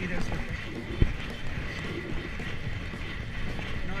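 Steady wind and road noise on the microphone of a camera riding on a bicycle moving along a paved road, with one sharp knock about a second in.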